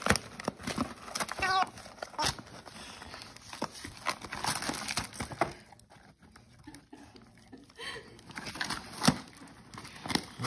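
Dog tearing wrapping paper and a cardboard gift box apart with its teeth and paws: irregular rips and crinkles of paper, fading for a while in the middle, with one louder sharp crack near the end.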